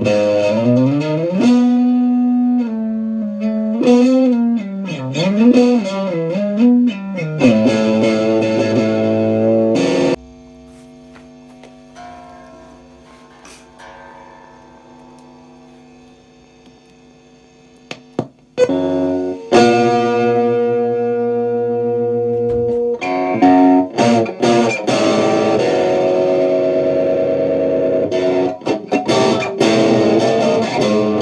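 Electric guitar being played: loud wavering notes for about ten seconds, then it drops suddenly to a quiet fading ring, and after a few clicks loud sustained chords start again.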